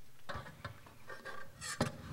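Scattered small knocks and rustling as a string orchestra settles before playing, with a sharper knock near the end; no music yet.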